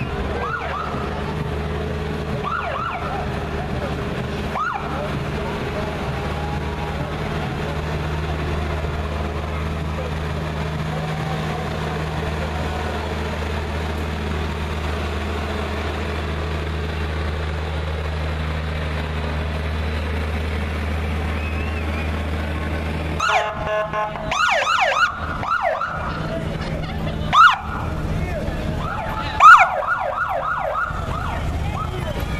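A military six-wheel cargo truck's engine running with a steady low drone as it rolls slowly past. From about 23 seconds in, police sirens give short rising and falling chirps in quick bursts, loudest twice near the end, as a police motorcycle and cruisers approach.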